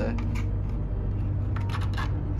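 Clear plastic packaging tray and cardboard box being handled and slid apart, giving a few short crinkles and clicks near the start and a quick cluster of them near the end, over a steady low hum.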